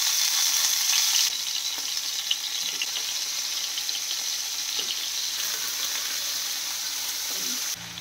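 Paneer cubes sizzling in hot ghee in a frying pan on a low flame: a steady frying hiss with small pops and crackles. The hiss is a little louder for about the first second, and the sound cuts off sharply just before the end.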